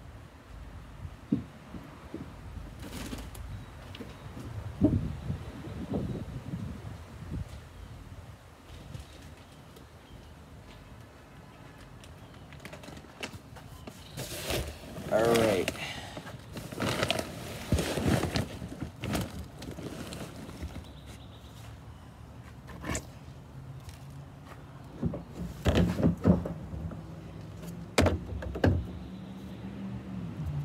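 Intermittent knocks, bumps and handling noises close to the microphone as the recording device is moved and set up, busier in the second half.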